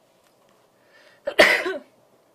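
A person coughs once, loud and sudden, a little past the middle, just after a faint intake of breath.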